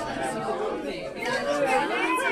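People's chatter: several voices talking over one another.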